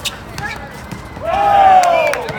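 A loud, drawn-out yell on one vowel that slides down in pitch, starting a little past halfway through. Before it come a few sharp smacks, like a ball being hit or bouncing on the court.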